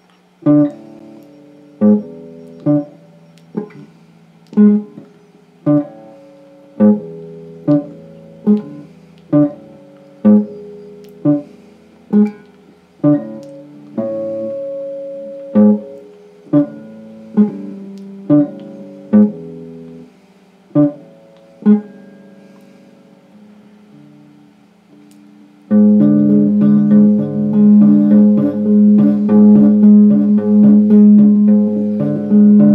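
Electric guitar strummed one chord at a time, about once a second, each chord left to ring and fade, as a chord change is repeated over and over for practice. Near the end, after a short pause, louder fast continuous strumming starts.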